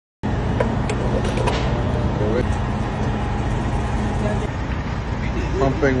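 Steady low rumble of vehicle noise with faint voices in it; a man starts speaking near the end.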